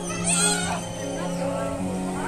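Young children squealing excitedly in high voices, loudest about half a second in, over background music.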